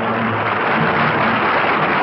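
Studio orchestra holding the song's final note, which ends about half a second in, followed by studio audience applause.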